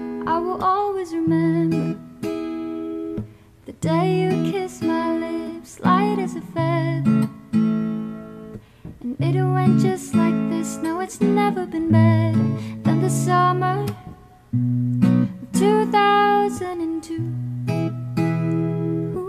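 Music: an acoustic guitar strummed and picked in a steady rhythm of chords, with a voice singing over it at times.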